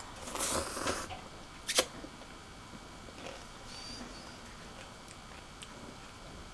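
A person slurping a strand of instant noodles from a cup, about a second long near the start, followed by a single sharp click.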